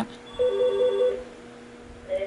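Mobile phone ringtone: a quick warble of short beeps alternating between two pitches, lasting under a second, beginning about half a second in.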